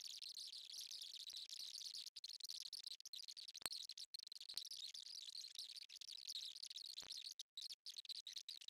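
Faint, steady scratching of a pen writing on paper in a spiral notebook, with an occasional light click.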